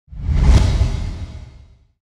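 A whoosh sound effect with a deep low rumble, swelling quickly to a peak at about half a second and then fading out over the next second and a half.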